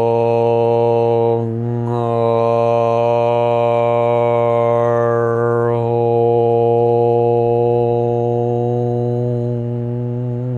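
A man chanting a mantra aloud on one long, steady low note, with a brief break for breath about a second and a half in and the vowel sound shifting over the following seconds.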